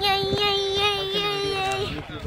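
A young boy's voice holding one long, steady sung note with a slight waver, cutting off just before two seconds.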